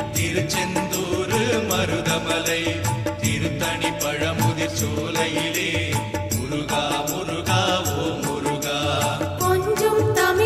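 Murugan devotional song of the kind played for Cavadee, with busy, steady percussion under melody and chant-like singing. Shortly before the end the music changes to held notes.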